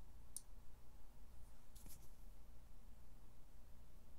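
Relay on an XY-LJ02 timer board clicking as it switches: one sharp click about a third of a second in and a few more near the middle. A faint low hum runs underneath.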